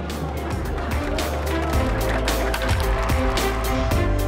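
Percussion music played on hand drums: quick, dense drum strikes over a steady low bass, with some held pitched notes, picking up about a second in.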